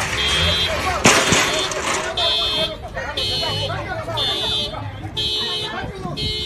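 An electronic warning beeper sounding about once a second, each beep about half a second long, under several people's voices. A loud sharp bang comes about a second in.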